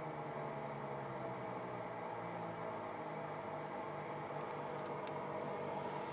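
Lycoming piston aircraft engine and propeller droning steadily, heard inside the light aircraft's cabin.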